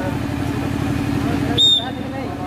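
A short, shrill referee's whistle blast about one and a half seconds in, signalling that the penalty may be taken, over crowd chatter and a steady low engine-like drone.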